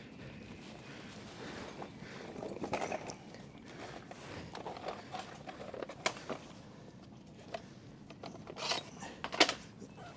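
Hand tools being handled: scattered light clicks and rustles, with a few sharper clicks about six seconds in and near the end, as allen keys are picked out and tried for size on a small bolt.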